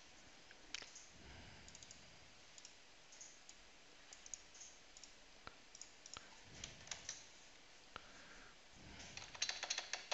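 Faint computer keyboard clicks, a few scattered keystrokes, then a quick run of typing near the end.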